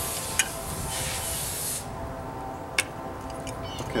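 A beer bottle being opened: a hiss of escaping carbonation for the first two seconds or so, with a couple of sharp clicks from the cap and opener.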